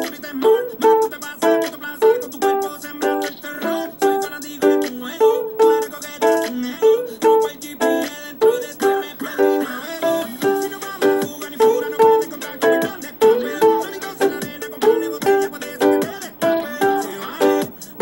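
Solo ukulele strummed in a reggaeton rhythm through a G, Am, Am, G chord loop, the strokes falling in a steady repeating pattern with accented beats.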